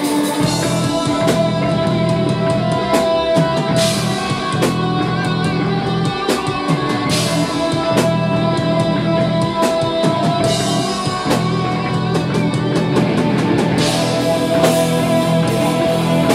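Heavy metal band playing live: distorted electric guitars, bass and a drum kit, loud and steady, with cymbal crashes about every three seconds.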